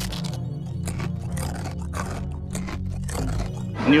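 Background music, with irregular crisp crunches of a croffle (croissant-waffle pastry) being bitten into and chewed close to the microphone.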